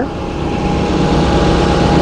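Skirt-mounted air-conditioning condenser fan running close up: a steady whir with a faint steady tone in it. Beneath it is the low rumble of the bus's Duramax 6.6-litre turbo-diesel idling.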